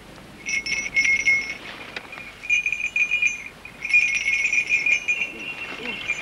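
Small bells jingling as they are shaken, in bursts of rapid high ringing: one starting about half a second in, another around two and a half seconds, and a longer run from about four seconds on.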